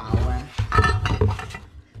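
Glazed Minnie Mouse piggy bank clinking and knocking in a series of short hard taps as it is handled in its cardboard box.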